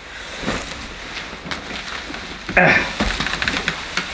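Bubble wrap and plastic packaging rustling and crackling as a wrapped upright vacuum cleaner is pulled up out of a cardboard box, with a louder burst about two and a half seconds in and rapid fine crackles near the end.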